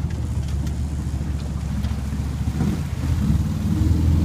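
Small boat's motor running steadily with a low drone, growing louder about three seconds in as it powers up to jump a log.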